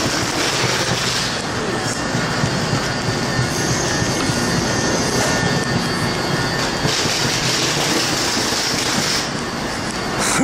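Steady loud rumble and hiss of a stopped Narita Express (E259 series) train's on-board machinery, filling an enclosed underground platform.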